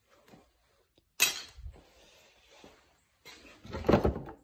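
Metal transfer-case chain clinking and rattling as it is handled, in two short bursts about a second in and near the end.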